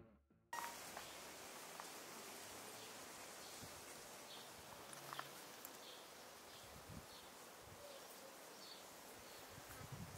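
The last of the background music dies away at the very start. After a half-second gap there is faint outdoor ambience: a steady low hiss with a few faint, short high chirps scattered through it.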